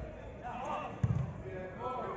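Distant shouting from players on the pitch, with a single dull thump about a second in, a football being kicked.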